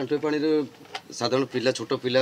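A man speaking in two short stretches with a brief pause between them.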